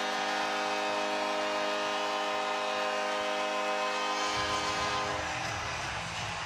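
Hockey arena goal horn sounding a steady chord of several tones over cheering and clapping fans, stopping about five seconds in, after which a low crowd rumble is left.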